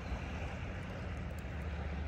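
Steady low rumble of the sea at the shore, with a few faint ticks in the middle as a hand picks through seaweed.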